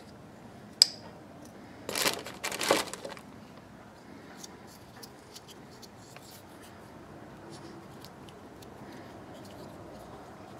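Hands working small plastic and rubber parts, the rubber grommets being worked off a plastic EVAP purge valve: a sharp click about a second in, then a second or so of crinkly scraping and rustling, then faint small clicks and taps.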